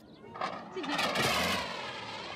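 An old lorry's engine running, its pitch dipping and then rising again.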